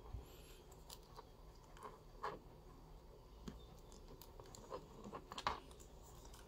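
Faint, scattered clicks and light taps of hard plastic as an action figure's hand and its small machine-gun accessory are handled and fitted together.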